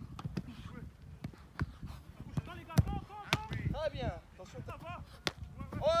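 Scattered sharp thuds of a football goalkeeper drill: the ball being struck and smacking into goalkeeper gloves, and the keeper landing from a dive on grass. The loudest thuds come about three seconds in.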